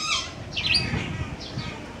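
Bird calls: a quick falling squawk at the start, then a few brief high chirps about half a second in and fainter ones after.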